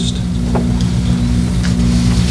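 Steady low hum with no break, and a faint click about half a second in.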